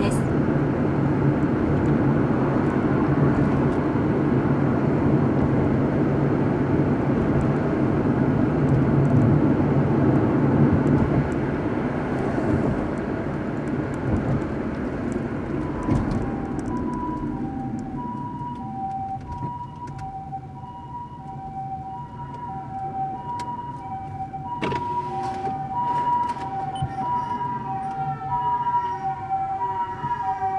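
Car road and engine noise while driving, falling away as the car slows. About halfway through, a Japanese ambulance's two-tone "pii-poo" siren starts and repeats steadily, alternating a higher and a lower note. Near the end it is joined by short rising-and-falling wails from the ambulance's foot-pedal siren.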